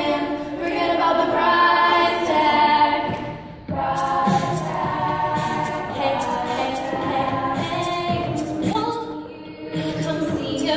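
All-female show choir singing a cappella in several-part harmony, with two brief drops in the sound, a little after three seconds in and near the end.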